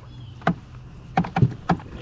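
A few short, sharp knocks and taps in an aluminium boat as a hooked fish is brought aboard, over a low steady hum.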